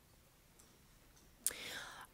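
Near silence, then about one and a half seconds in a short, breathy intake of breath by a woman into a lectern microphone, just before she speaks again.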